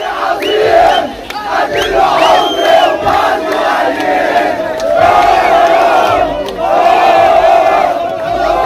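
Crowd of young men chanting and shouting together in unison, football supporters celebrating a title win; the chant swells and eases every second or two.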